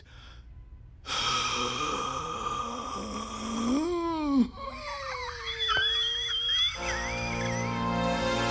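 Cartoon score music swells in about a second in, under an old man's long sigh that is his last breath. Wavering, sliding notes follow, then a held chord near the end.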